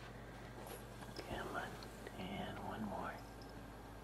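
A person's soft, whispered voice in two short stretches, the first about a second in and the second past the two-second mark.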